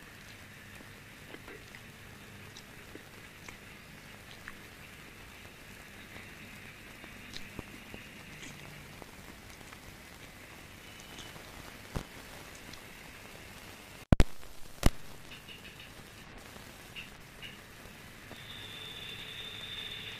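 Two sharp, loud bangs less than a second apart, about two-thirds of the way through, over faint steady background noise with a few light ticks.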